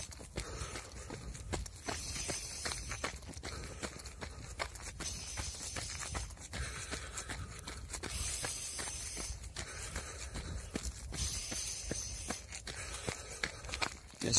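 A runner's steady footfalls and his paced breathing, drawn in through the nose and let out through the mouth in a counted rhythm, over a low rumble.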